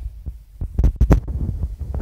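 Handling noise on a phone's microphone: low thumps and rumble, with a few sharper knocks around the middle.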